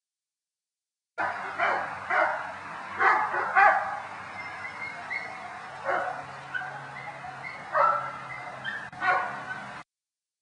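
Braque Saint Germain pointing dogs barking and yipping at a kennel, about eight separate barks at irregular intervals, starting about a second in.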